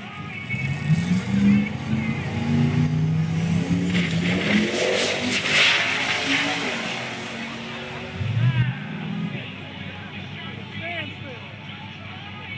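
Two drag-racing cars launching off the line and accelerating hard, engine pitch climbing in steps through the gear changes, then a loud rush of noise around the middle as they run away down the strip, fading after a shorter engine burst about two-thirds in.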